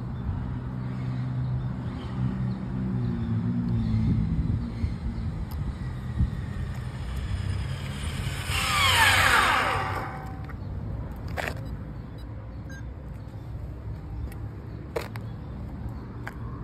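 Electric RC drag car on a 6S battery at 70% power passing at speed about nine seconds in: a brief high motor whine that drops sharply in pitch as it goes by. A low rumble sits under the first few seconds, and a couple of sharp clicks follow later.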